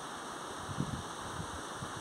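Steady, faint rushing of a small waterfall cascading over granite rocks.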